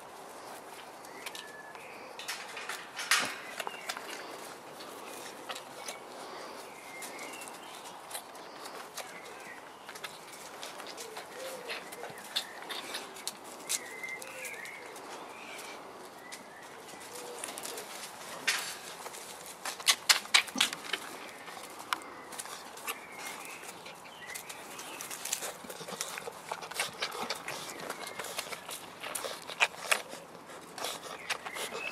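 Faint animal squeaks and low coo-like calls over steady outdoor background, with a sharp knock about three seconds in and a cluster of sharp knocks and rustles around twenty seconds in.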